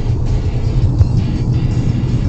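Engine and road noise inside a moving car, a steady low rumble, with music playing.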